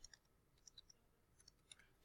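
Near silence with a few faint, short clicks of a computer mouse, spaced unevenly: about one just after the start, a pair a little before the middle, and two more near the end.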